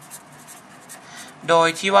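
Marker pen writing on paper: a run of short, faint scratchy strokes for about the first second and a half.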